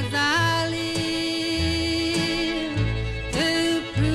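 Female country singer with a small country band: she holds one long note, sliding up into it, and starts a new phrase near the end, over plucked bass notes and guitar.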